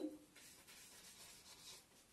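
Faint strokes of a felt-tip marker writing on a whiteboard.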